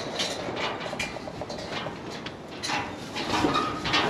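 Rustling and scuffling in straw bedding with scattered light knocks and taps, as goat kids and people move about in a pen.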